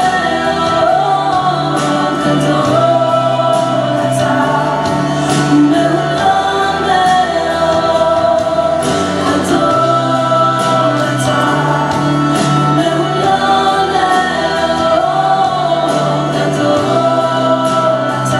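Worship song from a music video: a woman singing lead, with backing voices and a band of electric guitar and drums.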